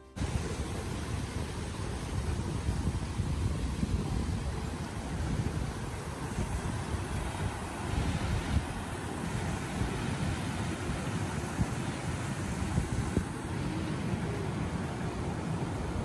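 Wind buffeting the microphone in uneven low rumbles, over the steady rush of water spilling down the low rock cascades of a small prairie creek waterfall.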